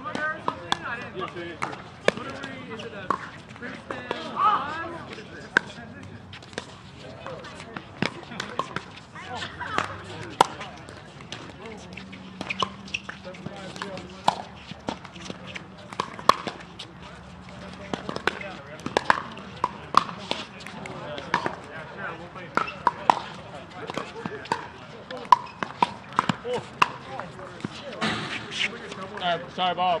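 Pickleball paddles striking a plastic pickleball in rallies, giving sharp pocks at irregular intervals, roughly one every second or so, with players' voices talking now and then.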